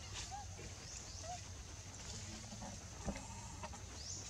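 A few short animal calls, clucks or squeaks, one near the start and another about a second in, over a steady high insect drone. There is a single knock about three seconds in.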